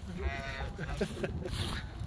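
A man laughing briefly in a few short pulses, with gusty wind rumbling on the microphone.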